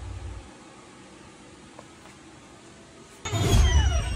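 Low steady background hiss for most of it, then about three seconds in a sudden low rumble from a handheld phone microphone being moved and handled.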